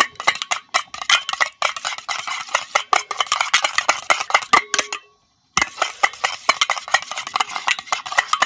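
A spoon beating raw eggs in a metal bowl: fast, continuous clinking strokes against the bowl, broken by a brief silence about five seconds in.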